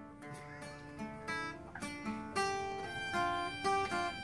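Acoustic guitar picking a melodic introduction, one note after another at changing pitches, each note ringing on under the next.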